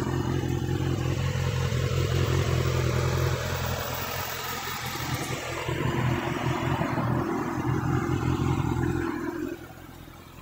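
2019 Kawasaki ZX-6R's inline-four engine idling steadily, becoming quieter near the end.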